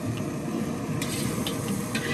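Steady roar of a gas wok burner, with a few light taps and scrapes of a metal spatula as stir-fried cabbage is pushed out of the wok.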